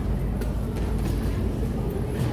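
Passengers walking up a concrete pedestrian ramp: a steady low rumble of footsteps and a wheeled suitcase rolling on concrete, with a few faint clicks and some distant voices.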